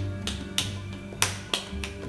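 Background music playing, with several sharp, irregular pats as a ball of clay is slapped between the palms to work the air bubbles out of it.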